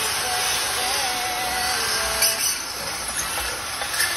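Electric drill running steadily as it bores into a concrete wall to fix a bracket, stopping with a click about two seconds in.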